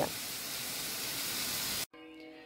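Food frying in a pan, a steady sizzle that cuts off abruptly near the end.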